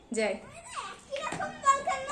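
Children's voices calling out while playing, high and sliding in pitch, after a woman's short word at the start.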